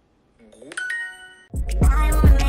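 A Duolingo lesson's answer chime from a phone: a short rising sound, then a bright, ringing ding about three-quarters of a second in. Loud hip-hop music with heavy bass cuts in for the last half second.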